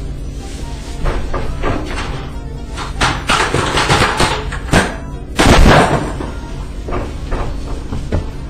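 Banging and crashing from objects being knocked about just off-scene: a run of irregular thumps and clatters, the loudest crash about five and a half seconds in.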